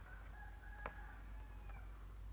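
A faint, drawn-out pitched call in the background, lasting about a second and a half, with a sharp click about a second in.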